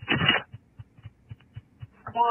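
Telephone-quality 911 call audio: a short loud burst at the start, then faint irregular clicks and low thumps on the line.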